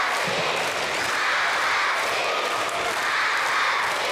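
Audience applauding steadily, a dense continuous clapping with some cheering mixed in.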